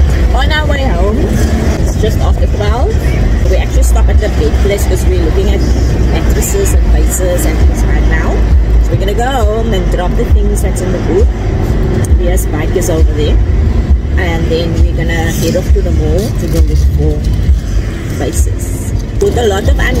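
Wind buffeting the microphone in an open-top convertible on the move, a loud, steady low rumble with road noise, under indistinct talking.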